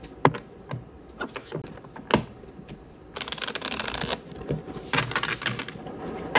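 A tarot deck shuffled by hand: a string of sharp card clicks and taps, the loudest about two seconds in, then about a second of rapid fluttering as the cards slide through each other, then more clicks.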